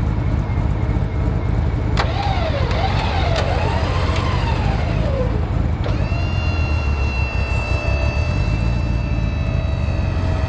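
Tow truck engine running steadily with a low rumble under load. From about two seconds in, a mechanical whine rises and falls several times. From about six seconds in, steady high-pitched whining tones take over, with a thin squeal wavering above them.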